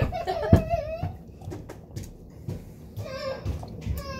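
A young person's drawn-out pained cry, held for about a second, from the burn of an extremely hot chili tortilla chip, with a thump about half a second in; quieter vocal sounds and a little laughter follow.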